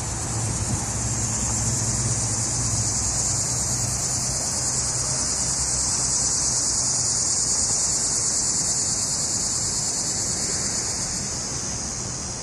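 A dense chorus of insects: a steady, high-pitched buzzing that swells a little mid-way. A low hum sits underneath for the first few seconds.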